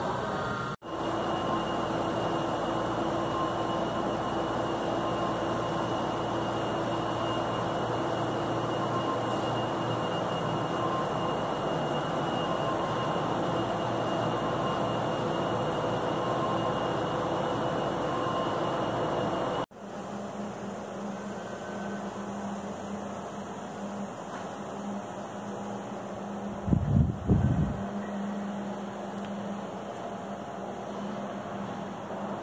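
Steady hum and rush of industrial plant machinery and ventilation, with a few faint steady tones in it. It gives way abruptly to a quieter, lower hum about two-thirds of the way through, and a brief cluster of loud, low thumps comes near the end.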